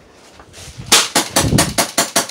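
Gas airsoft pistol firing a rapid burst of about eight shots, starting about a second in.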